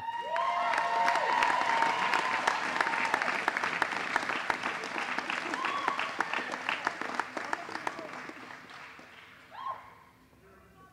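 A crowd applauding, with long held cheers over the first few seconds. The clapping thins out and fades away toward the end.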